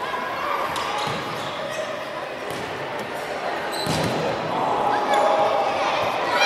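Futsal ball being kicked and bouncing on a wooden sports-hall floor amid shouting voices of players and spectators, with a solid thump about four seconds in. The shouting grows louder near the end as play presses toward the goal.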